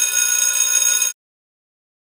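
A high-pitched electric bell ringing for about a second and a half, then cutting off suddenly: an interval timer's signal marking the start of an exercise.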